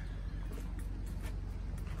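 Quiet outdoor background: a steady low rumble with a few faint light taps.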